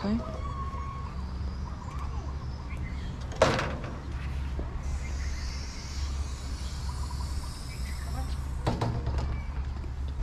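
Handheld camera being handled, with a steady low rumble and a sharp knock about three and a half seconds in, then another knock near nine seconds.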